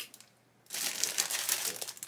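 Clear plastic bag crinkling as a plastic model-kit sprue inside it is picked up and handled. The rustle starts under a second in and lasts about a second.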